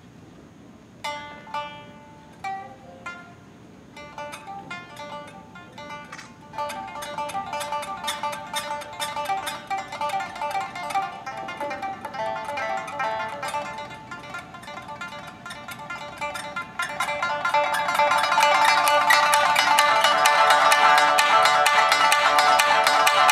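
Tsugaru shamisen played solo: after about a second of quiet, a few separate struck notes, then from about six seconds in a fast, continuous run of notes that grows louder and denser near the end.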